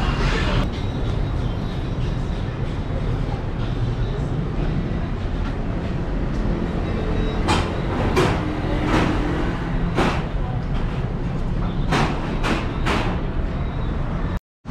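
A steady low vehicle rumble with a string of sharp clacks in the second half.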